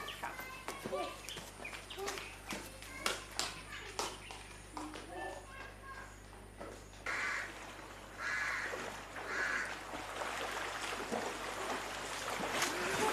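Short voices calling out, then outdoor ambience with three harsh bird caws about a second apart in the second half.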